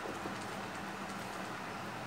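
Faint, steady background noise with a low hum, and no distinct handling sounds standing out.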